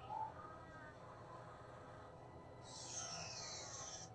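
Faint, muffled audio from an anime fight scene: a few wavering tones, then a hissing whoosh over the last second or so.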